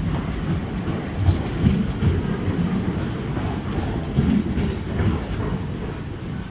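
Passenger coaches of an arriving express train rolling past close by. There is a steady low rumble, with the wheels knocking irregularly over the rail joints.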